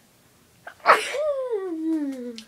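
A girl sneezes once: a sudden loud burst about a second in that trails off into a long voice-like tone falling in pitch.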